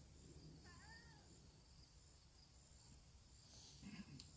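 Near silence outdoors, with a faint steady high-pitched insect buzz. A brief animal call comes about a second in: a few quick notes that rise and fall.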